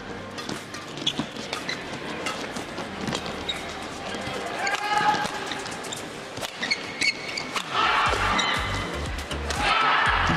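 Badminton rally: sharp cracks of rackets striking the shuttlecock and brief squeaks of players' shoes on the court. Music comes in about eight seconds in.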